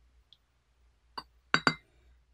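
Glass tea pitcher clinking against hard tableware as it is set down after pouring: a light click, then two loud, ringing clinks in quick succession near the end.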